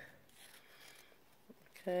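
Faint snipping of scissors cutting through fabric as the seam allowance is trimmed around a stitching line, with a small click about one and a half seconds in.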